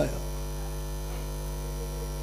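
Steady electrical mains hum: a low, even buzz with a stack of overtones and no change in level.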